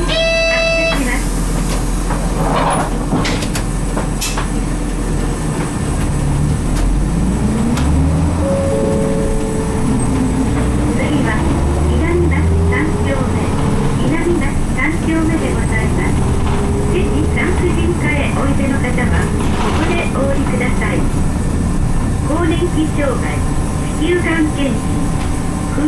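Six-cylinder diesel engine of a 1995 Nissan Diesel RM route bus pulling away from a stop. The engine note rises in several short steps as the driver shifts up through the five-speed manual gearbox, changing gear early at low revs. A brief electronic tone sounds at the very start, and light body rattles run under the engine.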